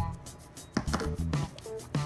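Glittery slime being pressed and stretched by hand, giving a few sharp sticky clicks and pops as air pockets in it burst.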